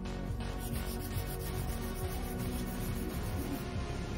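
Background music, with a hand nail file rubbing across a sculpted acrylic nail in short, fast strokes, about five a second, starting a little under a second in.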